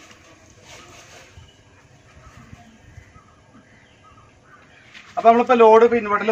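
Faint, scattered bird calls over a quiet background, then a man starts speaking about five seconds in.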